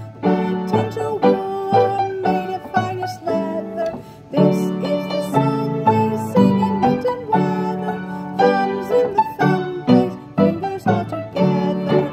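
A keyboard playing a simple tune with bass notes under the melody, with a short break about four seconds in.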